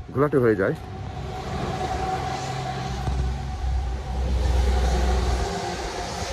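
A motor vehicle passing close by: a steady engine hum with a deep rumble that grows louder over several seconds, then cuts off shortly before the end.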